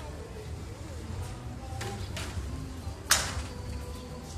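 A single sharp click about three seconds in, over a low steady rumble with faint distant voices and music in the background.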